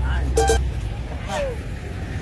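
Street ambience: a steady low rumble of traffic, with short snatches of voices about half a second in and a brief falling voice sound around a second and a half in.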